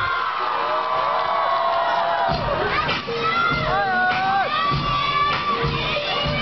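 Crowd screaming and cheering with many high-pitched young voices, their shouts sliding up and down, over dance music with a thumping beat.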